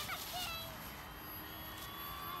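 Faint whine of the RC foam plane's small brushless electric motor and propeller in flight overhead, a thin steady tone that dips slightly in pitch shortly after the start.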